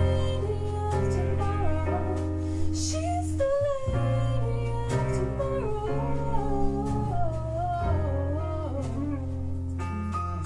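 Live band playing an instrumental passage: drums with cymbal strikes, bass notes and keyboard under a wavering, bending lead melody.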